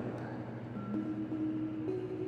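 Soft background music with long held notes, over the faint noise of broccoli frying in grapeseed oil in a skillet. A light click near the end as a lid goes onto the pan.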